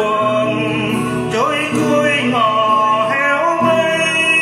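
A man singing a slow melody in long held notes with slides between them, over acoustic guitar accompaniment.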